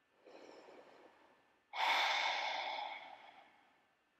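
A person breathing deeply: a soft inhale, then, nearly two seconds in, a sudden louder sighing exhale that fades away over about a second and a half.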